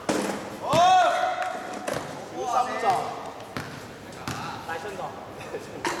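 Shouted voices of basketball players, the loudest a long call about a second in, with a few sharp knocks of a basketball bouncing on the hard court.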